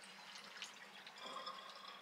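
Faint water trickling and dripping into the stainless strainer of a black Blanco kitchen sink as the last water drains away.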